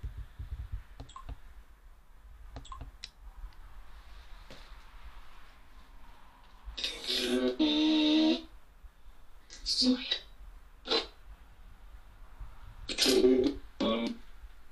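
Short bursts of a voice-like sound, the longest and loudest about seven seconds in. A few faint light clicks come in the first few seconds.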